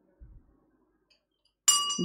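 Racetrack starting-gate bell going off as the stalls open for the start of a horse race: a sudden metallic clang with a steady ringing tone that carries on, starting near the end. Before it, near silence with one faint low thump.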